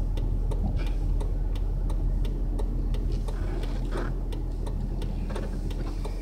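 Steady low hum in a car cabin, with a light, even ticking at several ticks a second.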